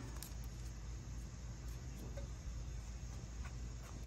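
Quiet, steady background noise with a low hum and a few faint, light ticks.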